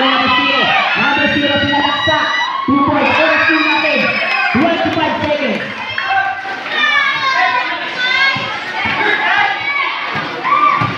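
A crowd of spectators, many of them children, shouting and cheering over one another, loud and without a break.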